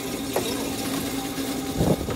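Grape crushing machinery, a crusher-destemmer at work, running with a steady hum. A small click comes early and a louder low knock comes near the end.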